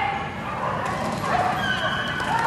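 Dogs barking and yipping in short, high-pitched calls.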